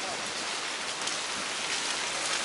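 Steady hiss of heavy typhoon rain falling.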